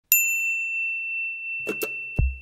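A single bright, bell-like ding, struck once, that rings on with one clear high tone, followed by two light ticks near the end: the opening of a logo jingle.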